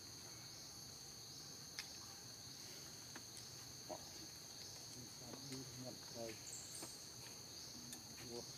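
A faint, steady high-pitched insect chorus of crickets or cicadas buzzing without pause. Two sharp clicks break through in the first half, and a few short, low calls come in the second half.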